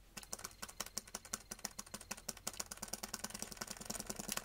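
Small plastic toy figure being jiggled by a finger on a cutting mat, rattling and clicking rapidly and irregularly, many light clicks a second.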